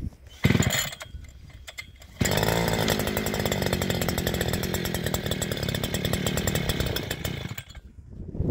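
Two-stroke engine of a Messer JH-70 petrol post driver being started on choke: a short burst about half a second in, then the engine catches about two seconds in and runs at a fast, steady idle for about five seconds before cutting out near the end.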